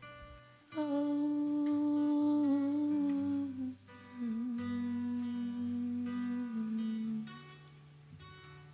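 A woman hums two long held notes, the second a little lower, over acoustic guitar chords.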